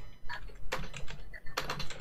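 Typing on a computer keyboard: a short run of separate keystrokes, with a pause about midway before a quicker cluster of strokes.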